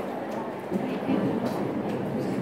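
Indistinct chatter of many voices talking over one another in a classroom, with no single voice standing out; it grows louder a little under a second in.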